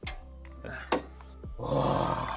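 Dodge Magnum's hood being opened by hand: a sharp click about a second in as the safety catch is released, then a louder rush of noise near the end as the hood is lifted.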